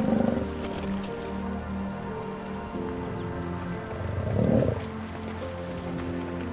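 Sustained music score under two low, rough growls from muskox bulls: a short one right at the start and a louder, second-long one about four and a half seconds in.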